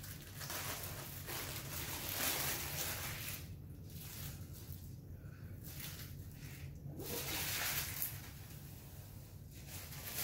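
Parchment paper rustling and crinkling in irregular swells as hands lift it and roll a raw bacon weave around a sausage log.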